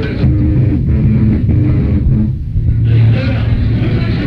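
A rock band playing live, with electric guitar and bass holding low notes over drums. It is a muffled, lo-fi concert recording, with a brief dip in loudness about halfway through.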